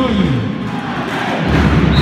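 Crowd noise in a reverberant indoor handball hall, with low thudding beats coming in about midway. A referee's whistle starts just at the end.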